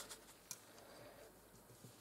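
Near silence: quiet room tone with one faint sharp click about half a second in.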